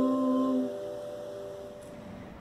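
Acoustic guitar's final chord ringing out and fading away within the first second, leaving quiet room tone.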